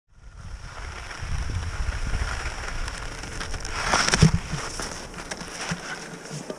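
Rossignol Experience 88 Ti skis sliding and carving on groomed snow: a steady scraping hiss with wind rumble on the microphone, swelling to a louder scrape with a thump about four seconds in.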